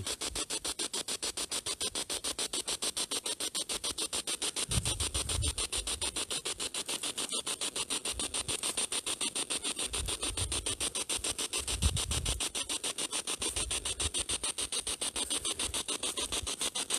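Spirit box sweeping through radio stations: a steady, rapid pulsing of choppy static, several pulses a second, with a few low thumps a third of the way in and again twice later.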